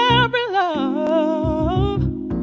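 A woman singing a slow, held melody with vibrato, her line sliding down in pitch about halfway through, over sustained electronic keyboard chords and low bass notes.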